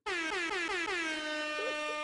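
A comedic sound effect laid into the narration: a single held, brassy tone that slides down in pitch over its first half second, then holds steady and fades out just after two seconds.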